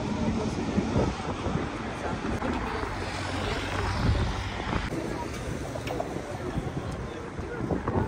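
Outdoor street ambience: wind buffeting the microphone over the hum of city traffic, with people talking.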